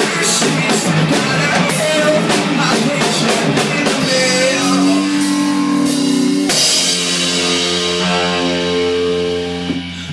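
Live rock band playing an instrumental passage on drum kit and electric guitars, with the drums keeping a steady beat. About six and a half seconds in, a crash hit lands and a guitar chord is left to ring out.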